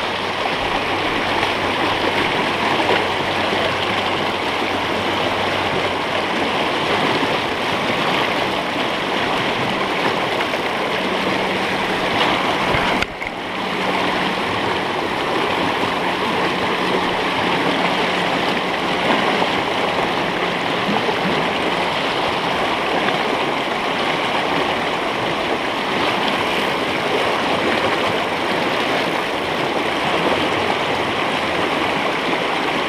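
Fast mountain river rushing over rocks close to the microphone: a steady, even whitewater noise, with one brief dip in level about halfway through.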